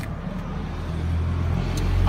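A motor vehicle's engine running nearby, a low steady rumble that grows louder near the end.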